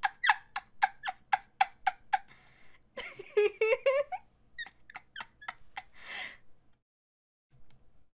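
A woman laughing in a run of short high-pitched giggles, about four a second, with a longer wavering laugh around three seconds in and a few more giggles after.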